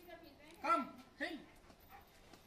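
German Shepherd giving two short barks about half a second apart, the first louder.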